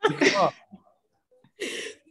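A woman laughing: a short voiced burst of laughter at the start, then a sharp breathy burst near the end.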